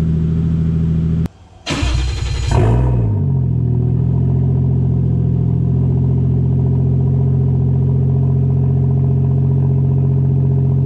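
Turbocharged Toyota 1JZ-VVTi straight-six in a Nissan 240SX S13 idling steadily. About two seconds in, the revs briefly rise and drop back to a steady idle.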